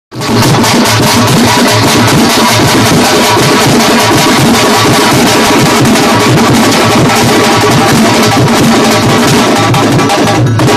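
Large double-headed folk drums played together in a fast, loud, dense rhythm, one struck with a thin stick and another with a padded beater. The drumming starts abruptly right at the start and keeps going without a break.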